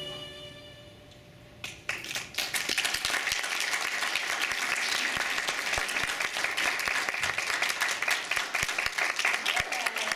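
Music dies away as the dance piece ends, then an audience of children and adults claps, starting about two seconds in and continuing steadily.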